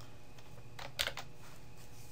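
Computer keyboard keystrokes: three quick clicks about a second in, as two letters are typed into a form field.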